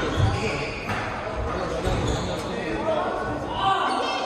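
A squash rally in an echoing court: the ball is struck and thuds off the walls, with shoe squeaks on the wooden floor, and then the point ends. Voices can be heard.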